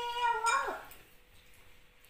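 A toddler's single drawn-out call, a meow-like "meh" that rises and then falls in pitch, in the first second; then it goes quiet.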